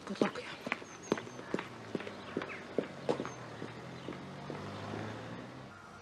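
Footsteps on hard ground, about two or three steps a second, with a couple of faint bird chirps. A low steady hum comes in about halfway through.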